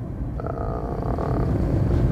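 Steady low road and tyre rumble inside the cabin of a moving Dacia Spring electric car.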